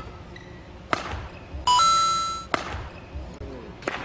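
Badminton rally: sharp racket-on-shuttlecock strikes about a second in, again a moment later, and once more near the end. Between them comes the loudest sound, a court-shoe squeak on the indoor court floor lasting nearly a second that steps up once in pitch.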